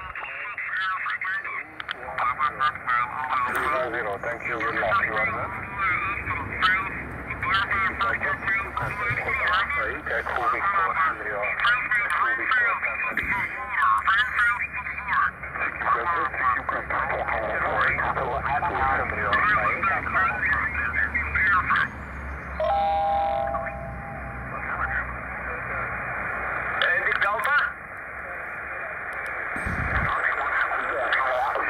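Xiegu X6100 HF transceiver's speaker playing single-sideband voices and band noise through a narrow receive filter as the tuning knob is turned near 14.183 MHz, the voices warbling in and out of tune. A steady tone sounds for about a second, roughly three-quarters of the way through.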